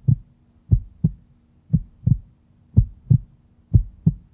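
Heartbeat sound effect: pairs of low thumps about once a second, over a faint steady hum, used as a suspense cue.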